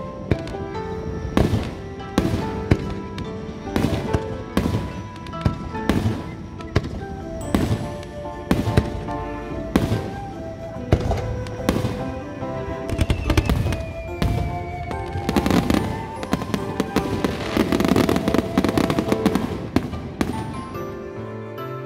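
Aerial firework shells bursting, a sharp bang about every second, with a thick run of crackling in the last few seconds. Background music with sustained notes plays under the bangs.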